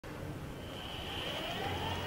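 Powered exoskeleton's electric knee and hip motors whining faintly as they lift the wearer from sitting to standing, one tone rising in pitch as the motors drive the legs straight.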